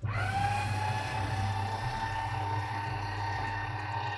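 Small automatic paper shredder bin's motor and cutters starting abruptly and running with a steady hum as a sheet of paper is fed in and shredded. The shredder has switched itself on after its sensor detected the paper in automatic mode.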